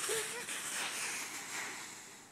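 Dry autumn leaves rustling and crunching as a person jumps into a leaf pile, fading out near the end, with a brief vocal sound at the start.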